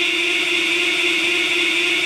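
A man's voice holding one long sung note at a steady pitch.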